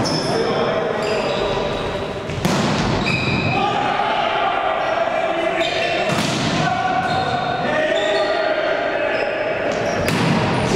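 Volleyball rally in a large echoing sports hall: the ball is struck with sharp slaps, clearly about two and a half seconds in and again about six seconds in, over players' calls and hall chatter.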